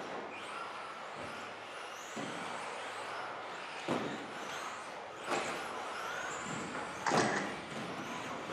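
Electric 2WD radio-control buggies racing on a carpet track: motors whining up and down in pitch, with three sharp knocks from the cars hitting the track, about four, five and seven seconds in.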